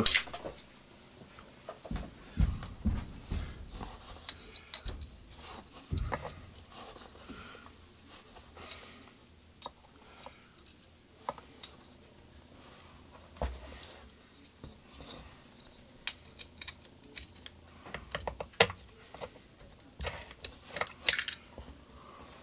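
Hex keys working the housing screws of a Robinair two-stage vacuum pump during teardown: irregular metallic clicks, clinks and knocks of tool and parts being handled.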